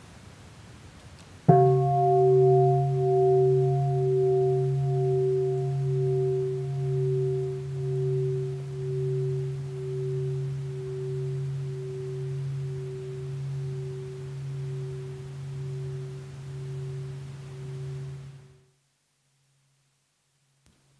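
Large bowl bell struck once about a second and a half in, ringing with a slow pulsing waver as it fades over some seventeen seconds, then cut off abruptly near the end. It is a mindfulness bell, invited to call a pause for mindful breathing.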